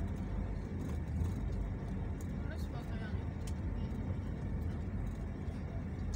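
Steady low rumble of a moving road vehicle's engine and tyres, heard from on board.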